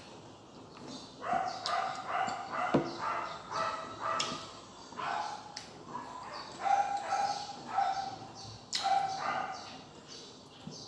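Crisp green mango slices being bitten and chewed, with sharp crunches. Over this runs a series of short, high-pitched whining cries, starting about a second in and repeating every half second or so.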